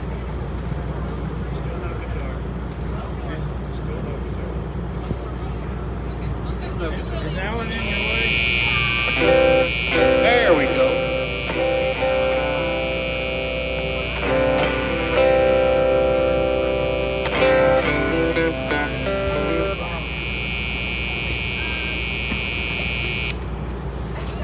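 Electric guitar sounding through a PA during a sound check, held chords that change a few times between about 9 and 20 seconds in. A steady high-pitched tone runs with them from about 8 seconds in until shortly before the end, over a low background rumble.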